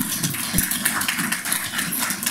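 A small audience clapping: a steady patter of many hands.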